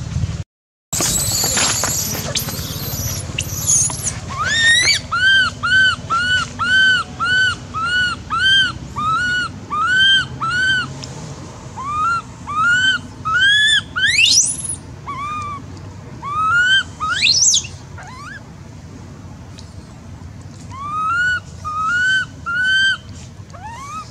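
Young macaque crying: a long run of short, high, arched calls, about two a second, broken by two steep rising shrieks midway, with a few more calls near the end.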